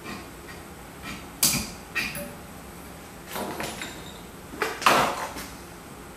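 Metal handling sounds at a bench vise: a metal insert plate being set in the vise jaws and a hand file laid against it, with sharp metal knocks about a second and a half and two seconds in and longer scraping sounds near the middle and toward the end.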